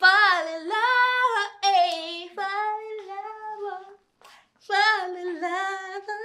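A woman singing wordless, high-pitched notes unaccompanied, in several held and gliding phrases with a short break about four seconds in.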